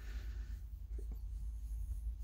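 A pen scratching faintly on lined paper while short straight line segments are drawn between points on a curve, over a steady low hum.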